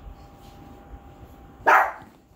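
A dog barks once, short and loud, near the end.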